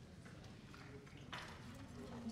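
Faint room noise with a few light clicks and a short noisy sound about a second and a half in.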